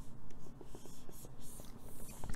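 Stylus nib scratching and tapping faintly on a tablet screen as handwritten lines and a circled number are drawn, with many small ticks.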